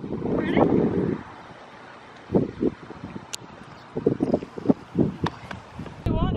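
Dull thuds of a horse's hooves on a sand arena, irregular and about three a second, from about two seconds in. Wind buffets the microphone in the first second.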